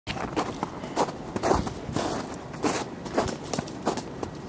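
Footsteps of a person walking on a snow-covered footpath, at an even pace of about two steps a second.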